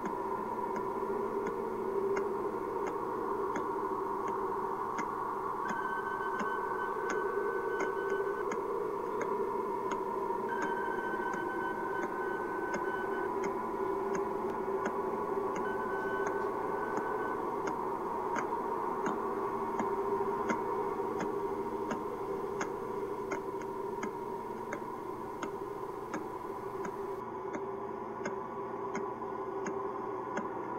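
Ambient electronic soundtrack: a sustained low drone under a steady, clock-like ticking, with three brief held higher tones in the middle stretch.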